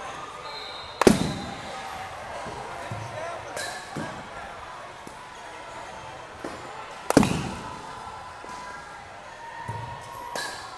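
Baseball bat striking a pitched ball twice, about six seconds apart, each a sharp crack that echoes briefly in a large indoor hall, with a few fainter knocks between.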